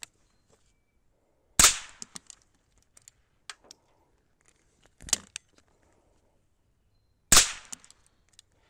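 Two sharp shots from a Chiappa Little Badger single-shot break-action rifle, about six seconds apart: one about one and a half seconds in and one near the end. Fainter clicks and a lighter knock fall between them.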